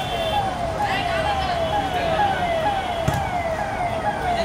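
A siren sounding a rapid, repeating falling wail, about three sweeps a second, steady throughout. A single sharp knock comes about three seconds in.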